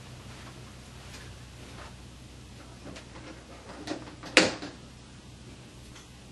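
Razor blade scraping and prying at the plastic push rivets of a fan guard on a metal aquarium light fixture: faint scrapes and small clicks, with one sharp click about four seconds in, the loudest, as a rivet pops loose.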